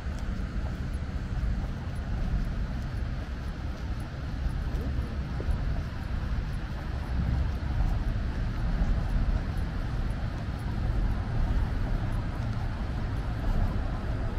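Steady low rumble of city road traffic, with no single vehicle standing out.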